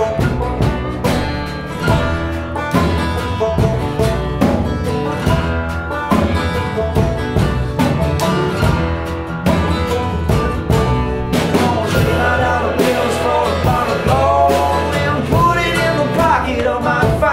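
Acoustic folk band playing an instrumental passage: strummed acoustic guitar over a plucked upright bass in a steady rhythm. A voice comes in near the end.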